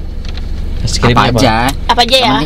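Steady low rumble inside a car's cabin, with a person's voice coming in loudly about halfway through.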